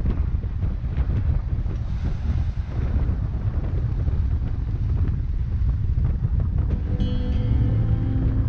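Strong wind buffeting the microphone over the rush of water along the hull of a sailboat heeled and beating upwind through waves. Music comes in about seven seconds in.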